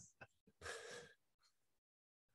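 A man's single soft breath, an airy gasp about half a second in, just after a faint click; otherwise near silence.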